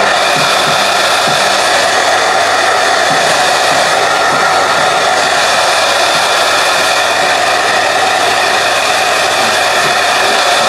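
Handheld hair dryer running at a steady, unchanging level: a loud rush of air with a faint motor tone in it.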